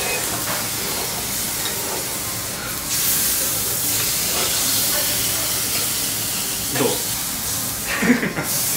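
Meat sizzling on a yakiniku grill: a steady hiss that grows brighter about three seconds in.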